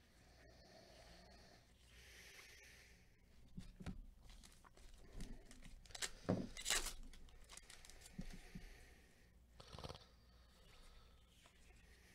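A foil trading-card pack wrapper being rustled and torn open by hand. It starts as faint handling, then comes a run of short crackling rustles around the middle, with another burst near the end.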